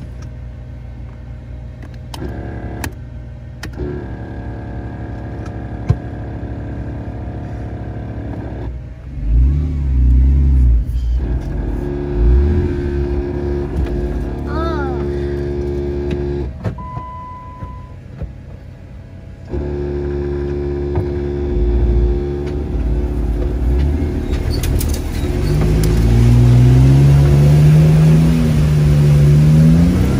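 Jeep Wrangler engine pulling through a river crossing, heard from inside the cab. It surges loudly about nine seconds in, and near the end it revs up, rising steadily in pitch as it works through the water.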